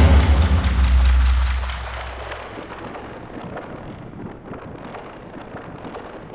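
Film soundtrack sound design: a deep drum hit at the start whose low rumble fades away over about two seconds. It leaves a quieter crackling noise bed like distant rain or fire.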